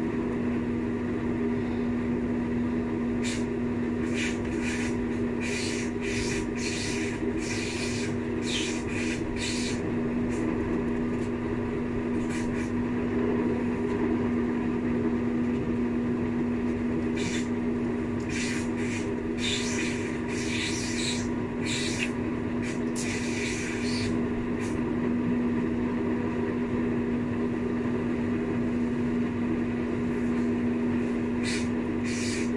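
Steady low hum of a jacuzzi's pump motor running, with two spells of fabric rustling as laundry is pulled off the line.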